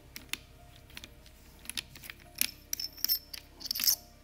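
Nose housing nut being unscrewed by hand from the nose of a Stanley PB2500N battery bolt-installation tool: small metallic clicks and ticks of the threaded parts and fingers. They are sparse at first and come thicker and sharper in the second half as the nut comes loose.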